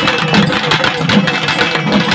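Naiyandi melam band playing: thavil barrel drums beat a fast, dense rhythm with heavier strokes every so often, under a held trumpet melody.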